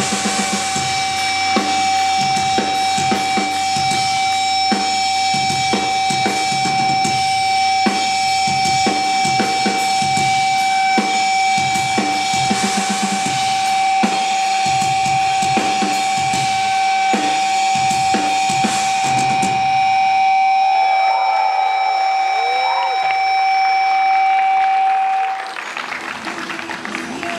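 Hardcore metal band ending a song live: the drum kit hits repeated loud accents over a single held high guitar note ringing as feedback. The drums stop about 20 seconds in, the feedback rings on alone, and it cuts off shortly before the end.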